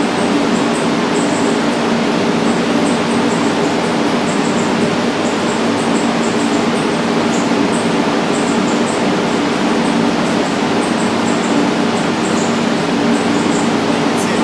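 Spray booth exhaust fan running at a steady, loud rush with an even hum underneath.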